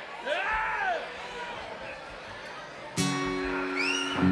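Bar crowd chatter with a short rising-and-falling cry near the start, then about three seconds in a guitar chord is strummed once and left ringing.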